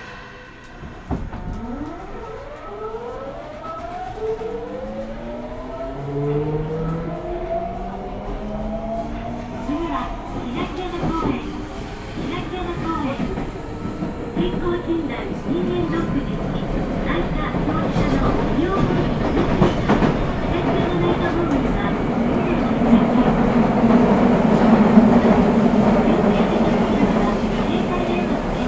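Nagoya Municipal Subway 5050-series train with its original-software GTO-VVVF inverter pulling away. After a brief quiet start, the inverter's whine climbs in several rising tones over the first ten seconds. Then the motor hum and the running noise build steadily louder as the train gathers speed.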